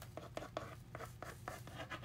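A ball-tip pen (a 1.5 mm Fudeball) drawing short outline strokes over still-wet paint on a journal page: a run of faint, quick scratches, several a second.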